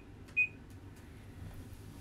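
A digital timer gives one short, high beep about half a second in, the end of its alarm, signalling that the silk screen's exposure time under the lamp is up.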